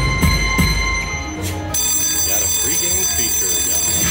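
Video slot machine's reels stopping with a few clicks, then a bright, sustained bell-like chime from a little before halfway on as three bonus coin symbols land and trigger the locking bonus feature.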